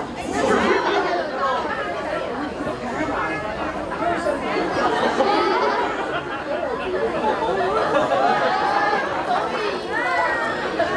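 Many people talking at once: a steady babble of overlapping voices with no single speaker standing out.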